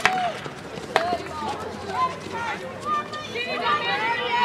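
Field hockey stick striking the ball twice, sharp cracks about a second apart, among players' and spectators' indistinct calls and shouts.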